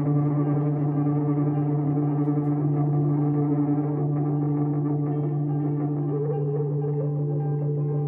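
Improvised experimental drone music from electric guitar and violin run through effects and electronics, with distortion and echo: a steady low drone under layered sustained tones, and a wavering higher line entering about six seconds in.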